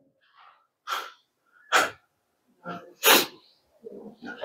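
Four short explosive bursts of breath from a man close to a handheld microphone, roughly a second apart, the last the loudest.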